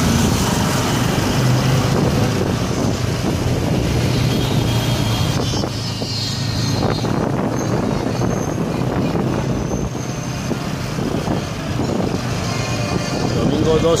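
Slow street traffic: motorcycle and car engines running with a steady hum, mixed with voices in the background.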